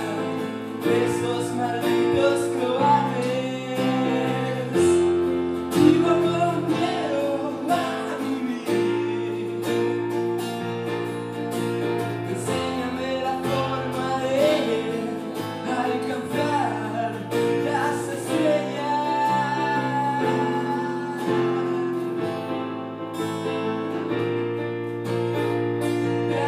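Live acoustic guitar and electric keyboard playing a song together, with held keyboard chords changing every second or two under a singing voice.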